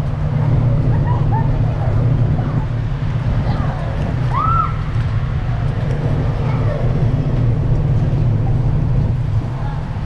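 Wind buffeting the microphone on an open ship deck, a steady low rumble, with faint voices of people around it.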